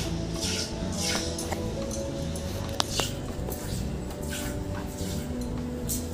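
Milk squirting in short rhythmic spurts, about two a second, into a steel bowl as a cow is milked by hand, over background music. Two sharp metallic clinks come about three seconds in.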